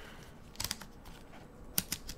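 Headband size adjusters of a pair of HiFiMan Ananda planar magnetic headphones clicking as they are worked by hand: a quick cluster of small, sharp clicks just past half a second in, and two more near the end.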